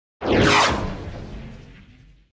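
A whoosh sound effect for an on-screen wipe transition. It starts suddenly, sweeps in pitch, then fades away over about a second and a half.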